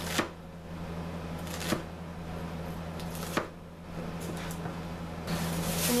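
Chef's knife chopping a shallot on a plastic cutting board: three sharp knocks about a second and a half apart, with a few fainter taps between them.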